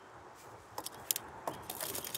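Small metal toy car clicking and rattling against a wooden fence rail as it is handled. A few sharp taps start a little under a second in and grow more frequent near the end.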